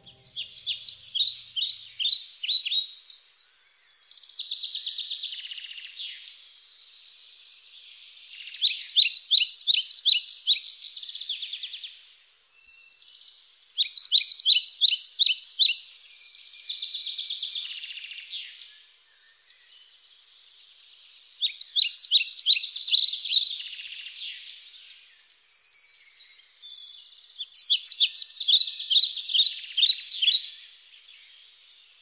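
Birdsong: loud, rapid trilled phrases of high chirps about every six seconds, with softer warbling in between.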